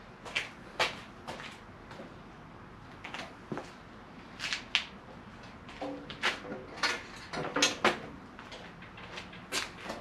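Manual sheet-metal bending brake being heaved on: scattered clicks, clunks and creaks from its clamp bar and bending leaf as it strains at its full three-foot width. The sheet may be a little too thick for it to bend.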